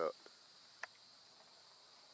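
Insects chirping steadily in a continuous high-pitched pulsing trill, with a single faint click a little under a second in.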